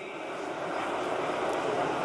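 Steady rushing background noise of the hall with no voices, slowly growing louder over the two seconds.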